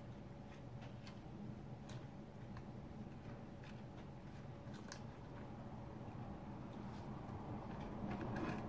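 Faint handling sounds of spinach leaves being picked from a plastic salad spinner basket and laid into a metal loaf pan, with a few light clicks, over a steady low hum.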